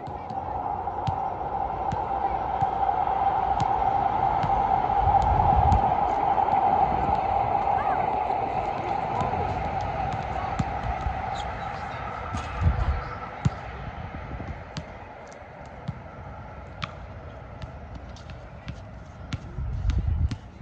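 Outdoor ambience with a steady drone that swells and then fades, and a few soft thuds of a soccer ball being kicked on grass.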